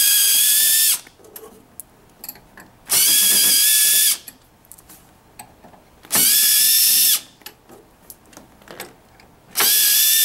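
Cordless drill-driver with a Phillips bit backing out the screws of a plastic cover: a steady motor whine in four runs of about a second each, roughly three seconds apart, the pitch falling off as each run stops. Small clicks and handling noises come between the runs.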